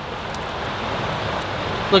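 Steady rushing outdoor noise from river water flowing and road traffic on a bridge overhead, swelling slightly toward the end.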